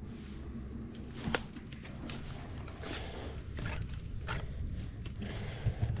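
Footsteps and rustling through long grass and undergrowth, with a few faint short bird chirps and one sharp click about a second and a half in.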